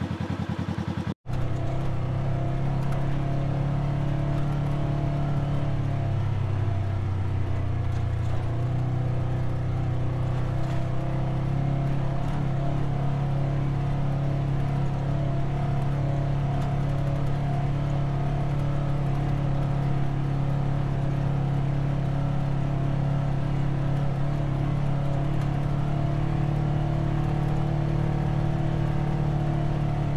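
Engine of a Polaris RZR 900 side-by-side running steadily under way, a constant droning note whose pitch steps up slightly about seven seconds in. A brief break in the sound comes about a second in.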